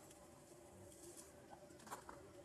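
Near silence: faint outdoor ambience with a soft click near the end.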